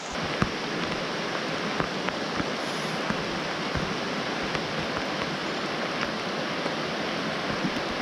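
Rain falling on a shallow, rocky creek, blended with the steady rush of water over the riffles, with scattered light ticks of drops landing close by.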